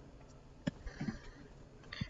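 A single sharp computer mouse click, about two-thirds of a second in, over quiet room tone.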